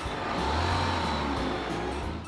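Cartoon sound effect of a bus engine running: a low engine rumble under a rushing noise that swells about half a second in and eases off near the end.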